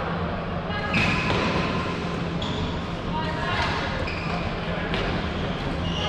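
Floorball play in an echoing sports hall: sticks and the plastic ball knocking several times at irregular intervals, with players' voices calling over the constant hall noise.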